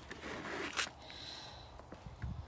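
Quiet handling sounds as a young rabbit is settled into a plastic bucket by hand, with one brief rustle just under a second in.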